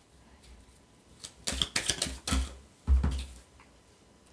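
A deck of oracle cards being handled: a quick, irregular run of clicks and taps as the cards are picked up and knocked together, from about one second in to just past three seconds.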